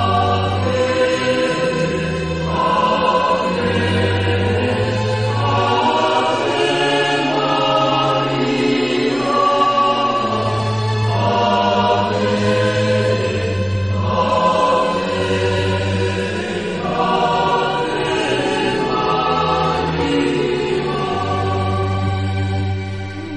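Slow religious choral music: voices holding long chords over a low bass note, the chords changing every second or two.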